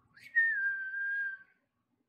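A single whistled note, held for just over a second and sliding slightly down in pitch.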